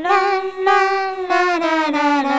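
A high singing voice holding 'la' notes, stepping to a new pitch every half second or so.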